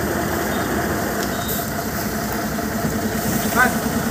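Heavily loaded Ashok Leyland log truck's diesel engine running steadily as the truck creeps around a hairpin bend.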